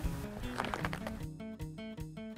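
Soft background music: a light melody of short notes stepping up and down.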